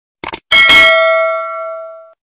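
Notification-bell sound effect: a quick double click, then a bell chime that rings with several clear tones and fades out over about a second and a half.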